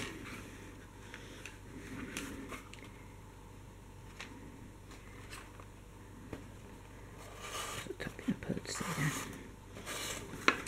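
Faint rustling and scraping of a kraft-cardboard notebook cover being handled while elastic cord is pulled through its punched holes, with scattered light clicks. The handling gets busier near the end.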